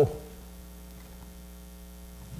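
Steady low electrical mains hum, with the end of a man's drawn-out word fading out in the first moment.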